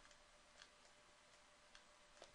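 Near silence: faint room tone with two faint ticks about a second apart.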